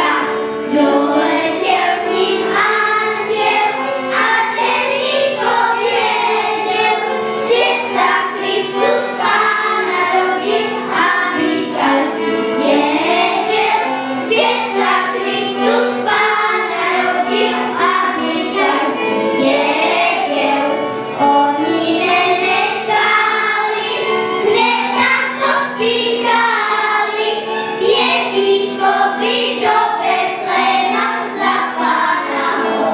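Children's choir singing a song in unison, the melody moving over steady held low notes.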